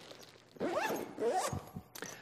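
Nylon backpack zipper (YKK) being drawn shut along the laptop compartment in a few quick rising strokes, followed by a short click near the end.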